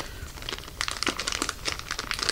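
A clear plastic specimen bag from a colorectal cancer screening test kit crinkling as it is handled in the hands, a quick run of small crackles that thickens about half a second in.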